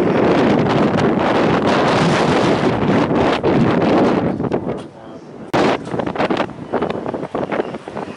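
Wind buffeting the microphone, heavy for the first four and a half seconds and then dropping away, with voices of spectators in the background. A single sharp knock sounds about five and a half seconds in.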